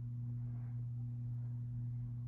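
A steady low hum with a fainter, higher tone above it, unchanging throughout.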